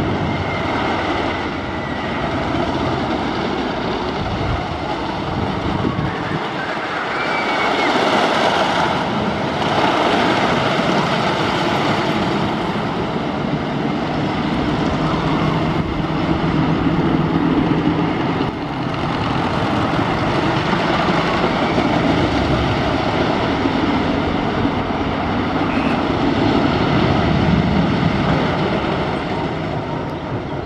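Wooden roller coaster train running along its track, a steady rumbling roar with rattle that swells and eases as the train moves along the circuit.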